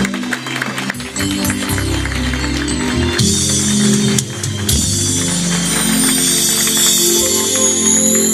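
Instrumental break of a slow Spanish-language romantic ballad played by a band, with keyboard and light percussion. No singing.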